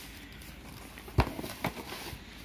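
Cardboard box and its bagged contents being handled: one sharp knock a little past halfway, then a few lighter taps and rustles.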